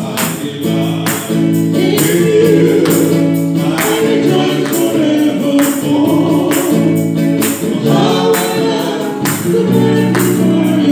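Live gospel worship music: a woman singing through a microphone, with electric guitar and a steady percussion beat.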